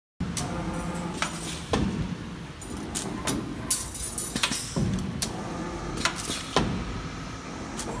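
CNC wire bending machine running: a string of irregular sharp mechanical clacks and knocks, about a dozen, over a low steady hum.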